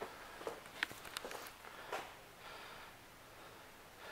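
Quiet room with faint rustling and a handful of light clicks in the first two seconds: handling noise from a hand-held camera being carried around.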